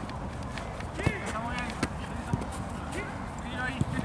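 Football players' shouts and calls across the pitch, short and unintelligible, over a steady background hiss, with a few sharp knocks about a second in, near the middle and near the end.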